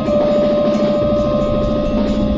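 Electronic music: a sustained humming drone of several steady held tones over a dense, fast-fluttering texture.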